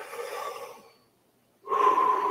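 A man taking a deep breath in close to the microphone, a short held pause, then a long breath out through the mouth starting near the end, carrying a faint steady whistle.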